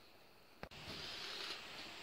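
Near silence, then a single short click about two-thirds of a second in, followed by a faint steady hiss of room tone.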